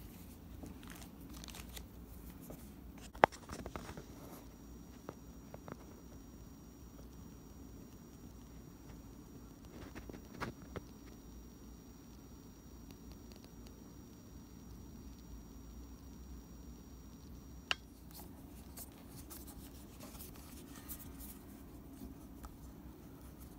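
Quiet room tone with faint finger-handling rustles and a few small sharp clicks as a small metal guitar screw is handled. The loudest click comes about three seconds in, with smaller ones near ten and eighteen seconds.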